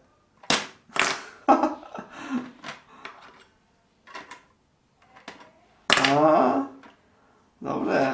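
Small plastic bean pieces of a Balance Beans game being set down and moved on the plastic seesaw board: a series of light clicks and taps in the first few seconds. About six seconds in, a voice gives a short wordless sound, and another comes near the end.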